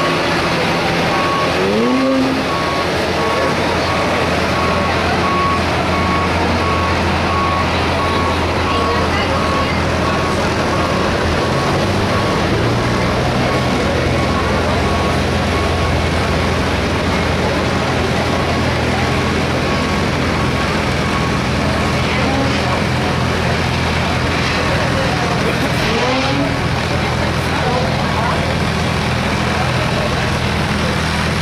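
Pickup truck engines idling in a truck pull staging lane, with people talking. A vehicle's reversing alarm beeps at a steady, even pace until about two-thirds of the way through.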